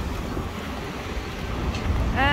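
Wind rumbling on the microphone over the steady noise of passing street traffic.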